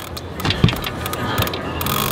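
Conventional fishing reel cranked under heavy load from a hooked sturgeon, its gears clicking, with a couple of sharper knocks. A steady low hum runs underneath.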